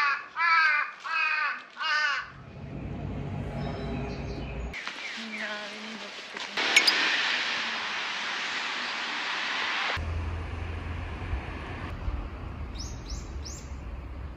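A crow cawing four times in quick succession, followed by steady outdoor rumble and hiss that changes abruptly at each cut, with a few short high calls near the end.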